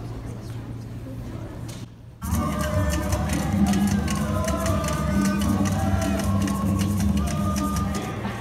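Recorded Haitian rara music from loudspeakers, starting about two seconds in after a brief drop in level. It has a steady percussion rhythm under sustained, alternating notes of vaksen, the Haitian bamboo trumpets.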